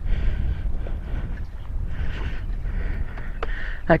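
Low wind rumble on the camera microphone with faint on-and-off rustling; the dirt bike's engine is silent, not running.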